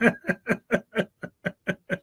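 A man laughing: a long run of short chuckles, about six a second, that taper off near the end.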